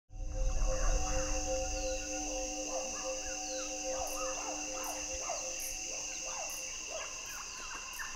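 Forest ambience: a steady high-pitched insect drone with short chirping bird calls repeating about every half second.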